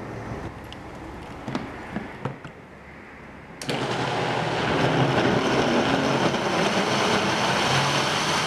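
High-speed countertop blender starting suddenly a little under four seconds in and running steadily, puréeing chunks of watermelon and pineapple in coconut water. Before it, a few light knocks of pineapple pieces dropping into the plastic jar.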